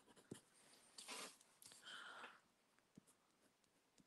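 Near silence, with a few faint strokes of a fine-tip pen on a paper tag and a soft click just after the start.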